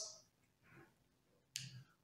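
Near silence in a pause between a man's sentences, broken about one and a half seconds in by a single short, sharp mouth click just before he speaks again.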